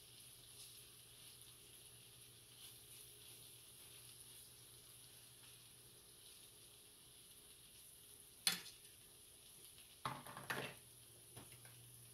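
Sliced sausage frying in butter and grease in a skillet, a faint steady sizzle. A few sharp clinks of a fork against the pan come about eight and a half seconds in and again around ten seconds in.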